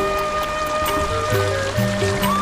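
Background instrumental music: a held, slowly changing melody line over a low bass line and light, regular percussion.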